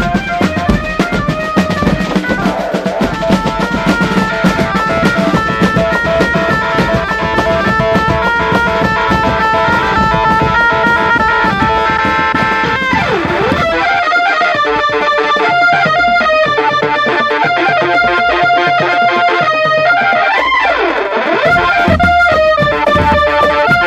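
Marching drum band music: drums played under a reedy, sustained melody line. About fourteen seconds in, the heavy drumming drops away and the melody carries on in short, clipped notes, with two swooping dips in pitch.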